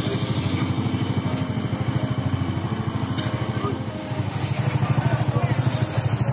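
Motorcycle engine idling with a fast, even low pulse, growing louder about four seconds in.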